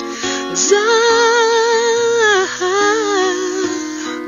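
Acoustic guitar playing chords under a wordless sung line: the voice slides up about half a second in, holds a note with vibrato, dips briefly, then sings a second, shorter phrase.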